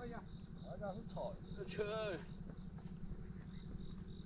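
A steady high-pitched drone of insects, with faint voices talking in the background about one and two seconds in.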